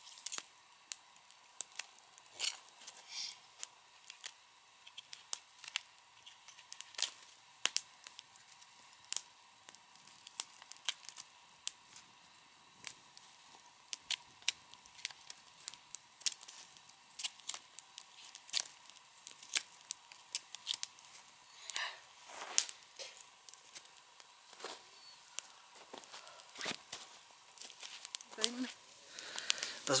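Dry sticks and kindling being snapped and split by hand: a long run of irregular sharp cracks and snaps, several a second.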